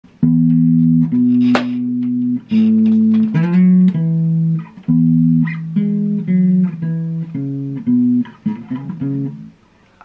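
Electric bass guitar played fingerstyle: a melodic line that opens with two long held notes and moves into a run of shorter notes. It dies away just before the end.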